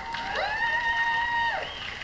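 Electric guitar flourish heard through a TV speaker: one note slides up, is held steady for about a second, then drops away.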